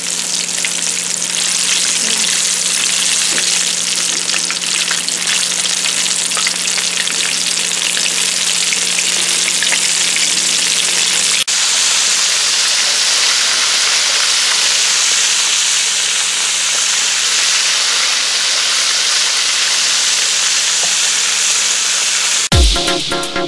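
Battered soft-shell crabs deep-frying in hot oil: a steady, dense sizzle and crackle of bubbling oil, with a brief break about halfway through.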